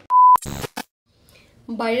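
A short, loud electronic beep, one steady high tone lasting about a third of a second, followed by two brief bursts of noise.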